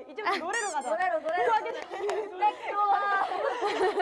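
Young women talking in Korean, several voices at once in lively chatter.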